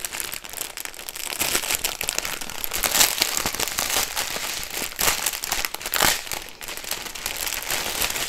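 Clear plastic packaging crinkling and crackling without a break as it is opened and handled, with a few sharper crackles. This is the outer bag of a diamond painting kit, holding strips of sealed drill bags.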